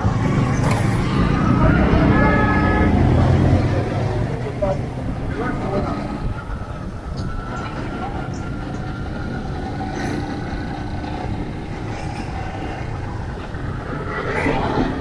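Small motorcycle engine running under way through busy street traffic, louder and heavier for the first few seconds, then settling to a steady level, with voices from the street around it.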